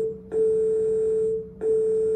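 Loud electronic beeping: one steady mid-pitched tone repeating in long beeps of just over a second each, with short gaps between them.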